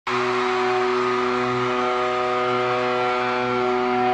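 A single steady droning note held without a break, with a wash of hiss behind it, from a rock band's live intro.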